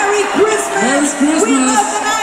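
Large arena crowd cheering and whooping loudly, many voices overlapping, with music still sounding through the hall.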